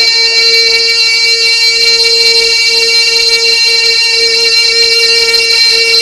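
A male devotional singer holding one long, high sustained note through a loud sound system, steady with a slight waver, after a quick run of ornamented turns just before.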